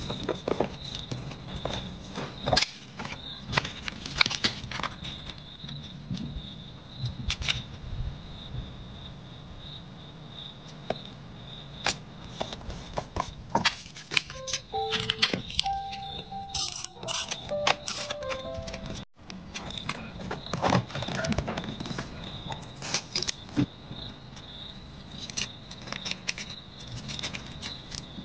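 Close-up paper-crafting sounds: stickers and paper cut-outs being handled, peeled and pressed onto planner pages, giving irregular crackles, taps and rustles. A faint steady high whine lies under them.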